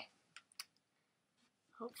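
Near silence, broken by two faint short clicks about half a second in, then a woman's voice begins speaking near the end.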